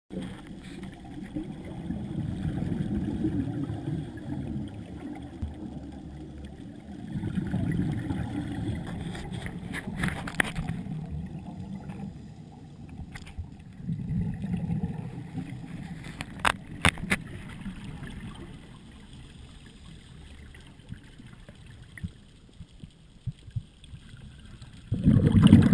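Scuba divers' exhaled regulator bubbles, in rumbling surges every five to seven seconds like breathing cycles, heard underwater through a camera housing, with a few sharp clicks between them.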